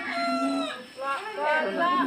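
A rooster crowing once: one drawn-out call that falls away after under a second, followed by voices.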